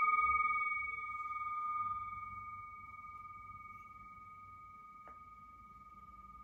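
A struck bell rings out with one clear high tone and a fainter higher overtone, slowly fading. Its lower and highest partials die away within the first two seconds. A faint tap comes about five seconds in.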